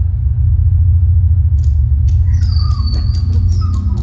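Electronic sound-design soundtrack of a projection-mapping artwork: a loud, deep, steady rumbling drone. About one and a half seconds in, a fast run of clicks joins it at about five a second, followed by high gliding squeal-like tones.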